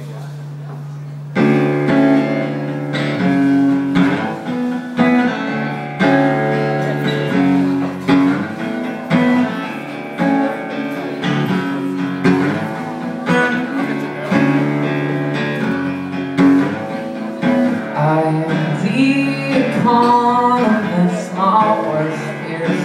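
Acoustic guitar played live through a PA, strummed in a steady chord pattern as a song's introduction, starting about a second in after a low hum. A man's singing voice comes in near the end.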